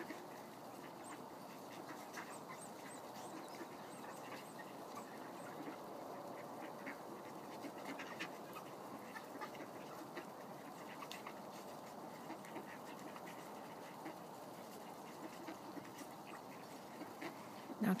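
A large flock of mallards feeding on scattered grain: a quiet, steady low chatter of soft quacks, with scattered faint clicks.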